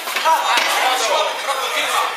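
Fighters' gloved punches and kicks landing as a few sharp smacks, over a crowd's voices and shouting.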